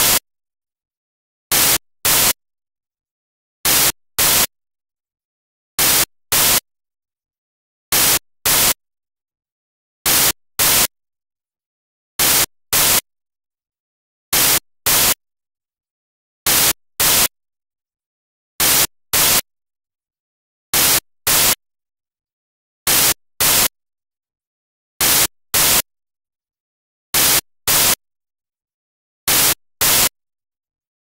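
Harsh bursts of static, two short bursts about half a second apart, repeating evenly about every two seconds with dead silence between: corrupted digital audio data, not a real-world sound.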